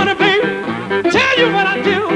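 Live music: a man singing high, without clear words and with a wavering vibrato, over guitar accompaniment.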